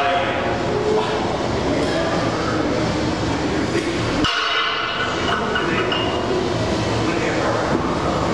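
Busy gym's steady din of indistinct voices and low rumble.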